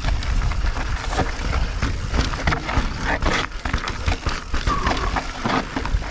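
Mountain bike riding down rough, rocky singletrack: irregular rattles and knocks of tyres, chain and frame over stones, over a steady low wind rumble on the helmet camera's microphone.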